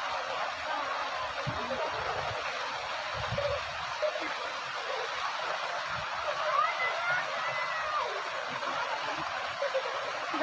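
Water pouring off an artificial rock waterfall into a shallow pool: a steady rushing.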